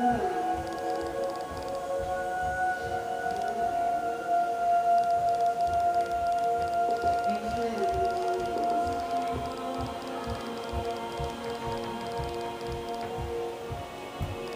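Film end-credits score playing through a television's speaker: long held notes with a few slow gliding lines over a low, repeated pulse.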